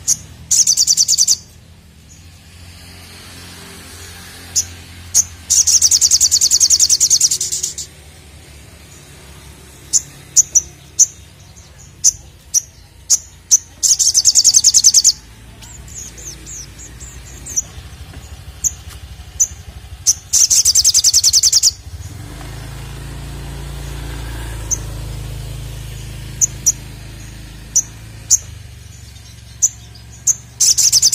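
Male olive-backed sunbird (sogok ontong) singing: sharp, high single chirps scattered between four loud, rapid, buzzing trills of about two seconds each.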